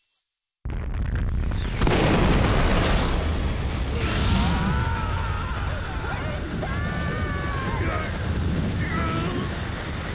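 Cartoon sound effect of a huge energy-cannon blast: after a moment of silence an explosion bursts in suddenly, swells again about a second later and keeps on in a long heavy rumble. From about four seconds in, wavering high-pitched wails ride over the rumble.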